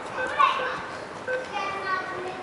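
Children's voices calling and chattering, high-pitched, with one loud shout about half a second in.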